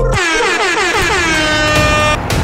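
DJ-style air horn sound effect, sliding down in pitch and then holding one steady tone for about two seconds before cutting off.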